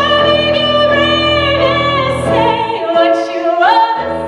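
A woman singing a pop ballad into a handheld microphone over piano accompaniment, holding long notes and sliding up to a higher held note near the end.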